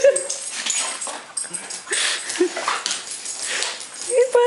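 Huskies giving short, excited whines and yips, with noisy breathy bursts between the calls.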